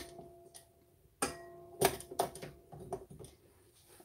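Light clicks and knocks as a stand mixer's flat paddle attachment is fitted, with the paddle touching the stainless steel mixing bowl. A sharper knock about a second in is followed by a short metallic ring, and a few lighter clicks come after it.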